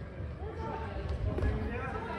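Players' voices calling out during a handball game, heard indistinctly across a large sports hall, over the hall's low background rumble.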